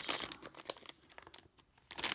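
A LEGO minifigure blind bag's plastic packet crinkling as it is handled and shaken to dump out the pieces. The crinkling is densest in the first second and then dies away.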